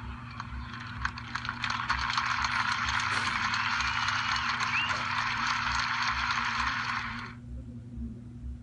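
Ballpark crowd applauding, a dense clatter of clapping that swells and holds, heard through a TV speaker recorded on a phone with a low steady hum beneath. It cuts off suddenly near the end.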